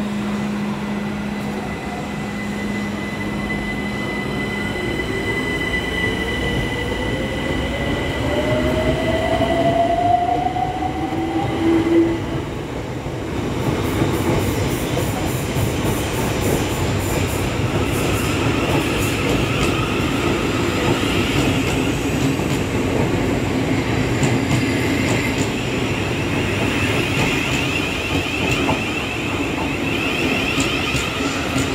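Southeastern electric multiple-unit train running through the station. Its motors whine and rise steadily in pitch for several seconds as it gathers speed, then wheel-on-rail rumble takes over, with wheels squealing through the second half.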